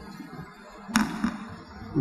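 Low background noise in a pause between speech, with one sharp click about a second in.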